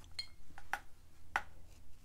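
A paintbrush clinking against a water jar as it is rinsed: four or five short, sharp clinks, one of them ringing briefly.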